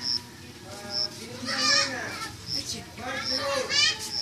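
High-pitched voices calling out twice, about midway and near the end, with a wavering pitch. Under them a short high chirp repeats roughly once a second.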